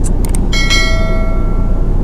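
Subscribe-button animation sound effect: a couple of quick clicks, then a bell chime that starts about half a second in and rings out, fading over about a second and a half.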